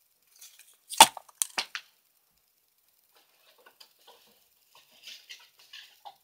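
Handling of a question jar and its paper slips: a sharp knock about a second in, a few lighter clicks just after, then faint rustling.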